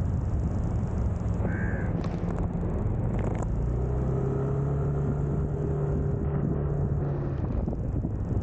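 Motor scooter cruising at a steady low speed: its small engine running with road and wind noise, the engine note holding a steady tone through the second half. A short high chirp about a second and a half in.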